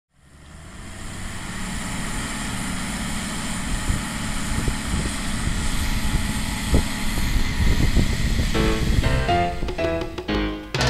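Diesel engines of two farm tractors, a John Deere and a Belarus, running hard under load as they pull against each other in a tug-of-war: a rough, steady rumble with scattered knocks, fading in at the start. About eight and a half seconds in, instrumental music takes over.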